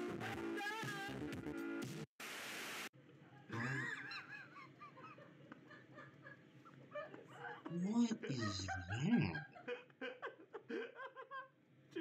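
Music plays for the first two seconds, then cuts to a short, loud burst of hiss-like noise. After that come voices whose pitch swoops widely up and down, loudest about eight to nine and a half seconds in.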